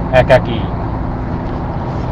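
A steady low background rumble, with a man's voice giving one short syllable just after the start.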